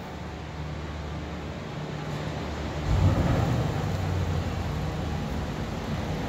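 Low steady mechanical rumble with a hum, getting louder about three seconds in.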